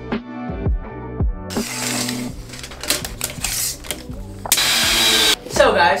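Background music with a beat, then from about a second and a half in a cordless drill driving screws into a bed frame: a clicking, rattling run, followed by a louder steady run of the drill just before speech starts.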